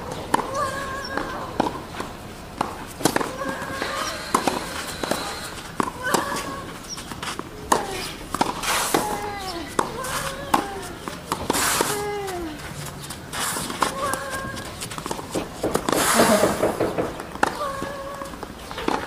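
Tennis ball struck back and forth with racquets in a rally on a clay court, sharp hits coming every second or two, with voices talking in the background. A louder burst of noise comes near the end.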